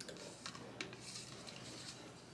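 Faint handling noise of a bottle of brush cleaner being held and turned in the hands: a couple of soft clicks and light rubbing.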